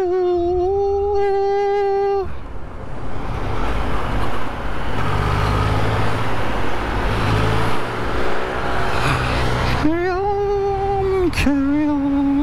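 Motorcycle riding through slow, heavy traffic, with steady engine and road noise. Three long, steady pitched tones stand out: one at the start lasting about two seconds, another about ten seconds in, and a shorter, lower one just before the end.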